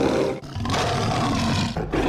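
Big-cat roars dubbed as the voice of Smilodon in film depictions. One roar ends about half a second in, a second loud roar runs for about a second, and a third begins near the end.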